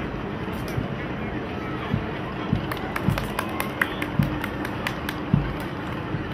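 A procession drum beating steadily at just under two beats a second, with sharp crackles and cracks over a murmur of voices.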